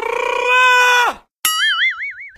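Comedy sound effects edited in: a held musical note lasting about a second that slides down as it ends, followed by a wobbling cartoon 'boing'.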